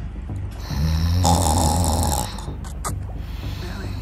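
A low, raspy, snore-like vocal sound lasting about a second and a half, from a man straining as he hauls himself up a trampoline frame.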